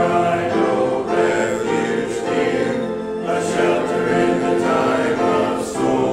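Church congregation singing a hymn together, many voices in chorus.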